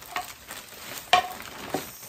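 Rustling and crinkling of wrapping being pulled off a set of plates, with a few sharp knocks, the loudest about a second in.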